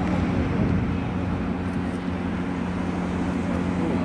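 A steady low hum, like idling engines, with a crowd of people talking under it.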